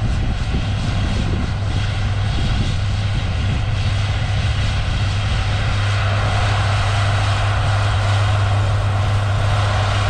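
Diesel engine of a Versatile 936 four-wheel-drive tractor running steadily under load while pulling a seven-bottom moldboard plow: a constant low hum at a steady pitch, getting slightly louder about halfway through.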